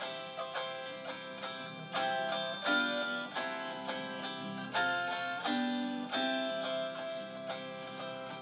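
A stringed instrument strumming chords, a new chord about every second, as the instrumental introduction to a folk song before the singing begins.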